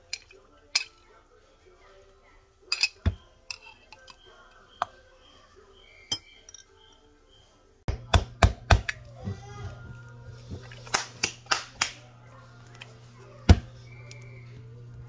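A utensil clinking against a glass jar in scattered clicks, then a denser run of sharp clicks and knocks as a glass pickle jar and its lid are handled, the loudest knock near the end. A steady low hum comes in about halfway through.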